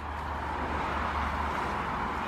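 Steady rushing noise of distant road traffic, swelling slightly in the middle, with a low hum underneath.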